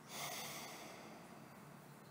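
A person's breath close to the microphone: one soft, long breath that swells just after the start and fades away over about a second and a half.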